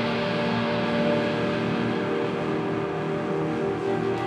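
Live rock band in a quieter passage of the song: a sustained, droning wash of held electric guitar notes, with no drum hits.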